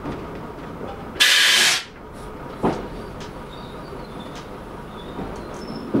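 Train running slowly along the track, heard from the cab: a steady rumble with wheels clicking over rail joints every second or two. A little over a second in comes a loud, short hiss of about half a second.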